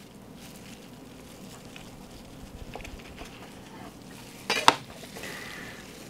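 Long slicing knife sawing through a smoked brisket's bark and meat, a faint rough scraping. About four and a half seconds in, a sharp clack as the knife is laid down on the cutting board.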